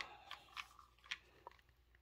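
Faint, scattered clicks and taps of a plastic bar clamp being picked up and handled, with a sharper click about a second in.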